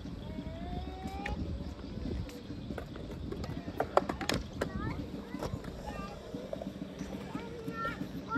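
Small skateboard's wheels rolling over smooth concrete, a steady low rumble, with a few sharp clicks; the loudest is about four seconds in.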